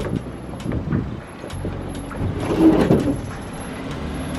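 A Peugeot SUV rolling slowly onto a wooden ferry deck: its engine running low at crawling speed, with scattered knocks from the tyres over the ramp and boards. The sound swells to its loudest about two and a half seconds in.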